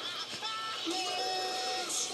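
Cartoon soundtrack music playing quietly from a television speaker, with a few held tones.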